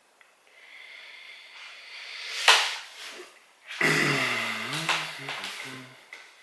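Handling noise as the wired bonsai and its pot are moved: a hissy rustle with one sharp click about two and a half seconds in. After that comes a man's wordless hum lasting about two seconds.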